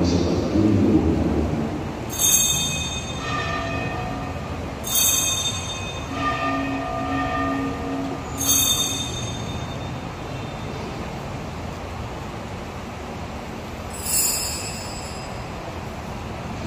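A small altar bell rung four times, each stroke bright and metallic and fading out over a second or two. The first three strokes come about three seconds apart, and the last follows after a longer pause near the end.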